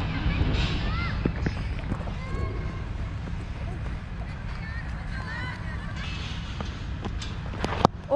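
Indistinct shouts and calls of players across an open cricket ground, over a steady low rumble on the helmet microphone, with a sharp knock near the end.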